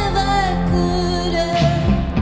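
Live band with a string section playing a slow passage of sustained, held chords.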